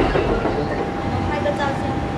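Noise inside a commuter train carriage as it runs, with faint voices and a steady high tone that starts about half a second in.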